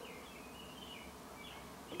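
Quiet background hiss with a faint, wavering high-pitched buzz.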